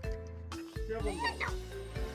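Background music with a steady beat. About a second in, a short high wavering cry glides up and down over it.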